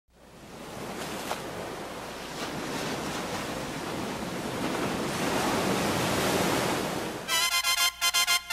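Ocean surf noise fading in and growing steadily louder. Near the end the noise drops away and music starts: bright pitched tones cut into quick stutters.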